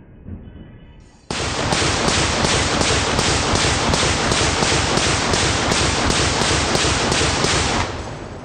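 Belt-fed machine gun mounted on a pickup truck firing one long sustained burst, starting suddenly about a second in and running for about six and a half seconds as a steady rapid string of shots before stopping just before the end.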